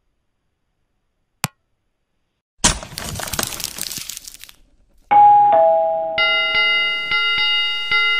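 Sound effects of a subscribe-button animation: a single click, then a rushing swoosh, then a two-note ding-dong chime. A ringing bell follows, struck several times in quick succession, each strike ringing on.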